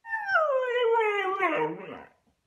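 Husky giving one long, falling howl-like 'talking' cry that fades out near the end, a protest at being told it can't go along.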